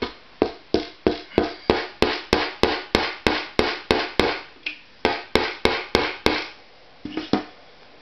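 Hammer driving a small, thin nail: about twenty steady blows at roughly three a second, then a short pause and a quick run of three more taps near the end.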